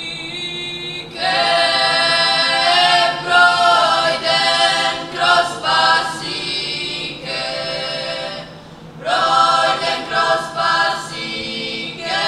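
A small vocal group of boys and girls singing a cappella into microphones, holding long notes, with a brief pause for breath about nine seconds in.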